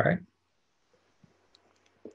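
A man's voice finishing a word, then quiet room tone with a few faint, sharp clicks in the second half.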